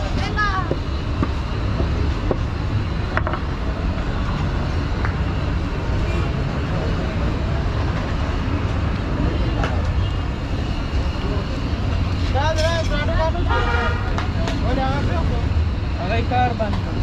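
Roadside street ambience: a steady low rumble of traffic, with people talking at the start and again near the end, and a single knock about three seconds in.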